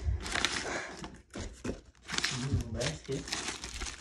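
Plastic bags crinkling as they are handled and pulled open, with a short lull a little over a second in.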